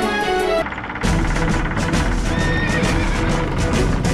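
Background music breaks off just after the start; from about a second in, a group of horses gallops with clattering hooves, and a horse whinnies about halfway through, with music continuing underneath.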